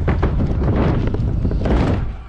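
Wind rushing over the microphone of a body-worn action camera as a stunt scooter rolls fast down a large ramp, its wheels rumbling on the ramp surface, with a few faint knocks.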